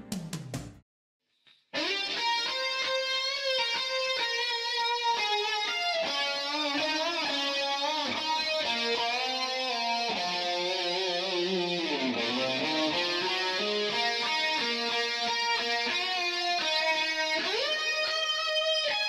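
Electric guitar, a Sterling, playing a lead solo with a sustained singing tone: melodic runs with string bends and vibrato. It starts about two seconds in, after a brief silence.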